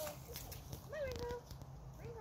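Bull terrier puppy whining: a brief call right at the start, then a longer high whine about a second in that falls in pitch and levels off.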